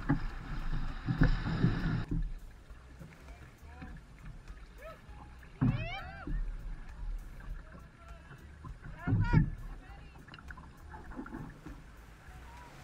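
Water sloshing around wading legs and an outrigger canoe hull, with wind rumble on the microphone, stopping suddenly about two seconds in. Then quieter water against the moving canoe, broken by two short shouted calls about six and nine seconds in.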